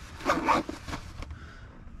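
A backpack zipper pulled once in a quick zip lasting about half a second, followed by a faint click a little after a second in.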